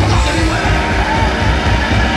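Punk rock band playing live: shouted lead vocals over electric guitars, bass guitar and drums, loud and continuous.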